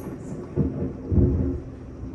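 Thunder rumbling low and rolling, with two swells about half a second and just over a second in as it dies away.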